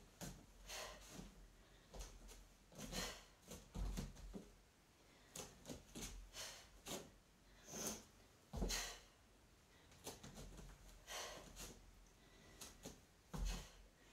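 Faint sharp breaths and soft thuds of bare feet on a foam floor mat during repeated back kicks, with three heavier thumps as the feet land.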